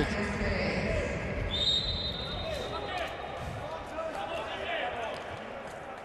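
Handball court sounds: a ball bouncing on the floor and players' faint shouts. About a second and a half in, a referee's whistle blows one steady note for about a second and a half.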